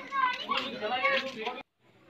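High-pitched children's voices chattering, cut off suddenly about one and a half seconds in.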